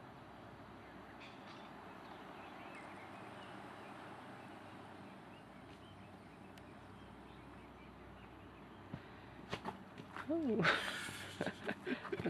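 Faint, steady outdoor background noise with no clear single source. Near the end come a few short knocks and a person's voice.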